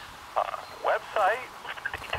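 A man's recorded voice playing through a Uniden DCX150 DECT 6.0 cordless handset's speaker, coming through in three short fragments with gaps between. The handset is near the edge of its range.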